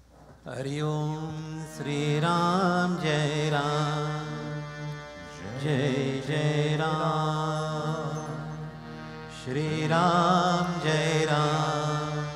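A man chanting a Hindu mantra into a microphone in long, melodic, held phrases with wavering ornaments, starting about half a second in and pausing briefly for breath twice.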